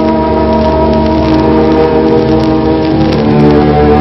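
Orchestral background music scoring a silent film: sustained chords from strings and brass, moving to a new chord about three seconds in.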